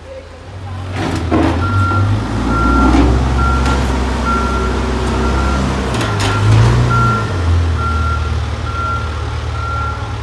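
Backhoe loader's diesel engine running with its reversing alarm beeping steadily, a little more than once a second, from about two seconds in. A couple of sharp metallic knocks sound around one second and six seconds in.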